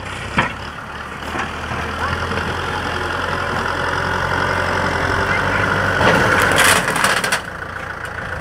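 Kubota M6040 SU tractor's diesel engine running under load as its front blade pushes a heap of soil, growing steadily louder. A loud, rough burst of noise comes about six seconds in, the engine and the soil pushed by the blade, then eases off suddenly about a second later.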